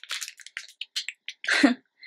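Snack wrapper crinkling and rustling as it is pulled open by hand: a quick series of short, irregular crackles.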